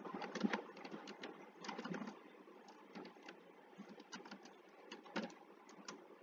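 Computer keyboard typing: faint, irregular keystroke clicks.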